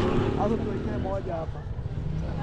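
Indistinct voices of people talking over a steady low rumble, like vehicle engines running nearby.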